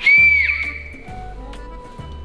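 A single high whistle-like tone that starts sharply, holds for about half a second and fades within about a second, over steady background music.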